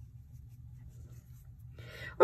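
Faint rubbing and rustling of yarn against a crochet hook as a slip stitch is worked, over a low steady hum.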